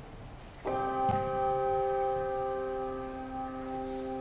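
A pair of handbells rung as a memorial chime: struck about half a second in, with a second stroke just after, then ringing on in several steady tones that slowly fade.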